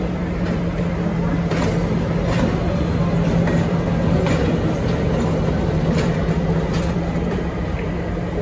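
V/Line Y class diesel shunting locomotive Y161, with a two-stroke EMD diesel engine, running steadily as it rolls slowly past, a low, even drone that swells a little as it comes closest. A few sharp clicks come at irregular moments.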